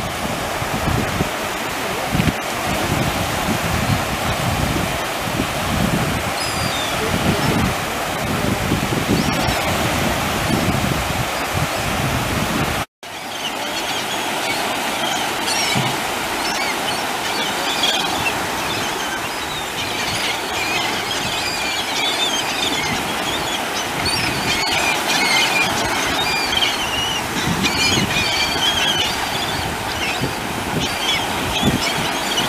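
Surf washing and breaking, with wind rumbling on the microphone. After a short break about 13 s in, many gulls call over the surf in quick short cries that go on to the end.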